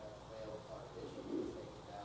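A faint, low man's voice speaking quietly, with one short, louder low vocal sound about two-thirds of the way in.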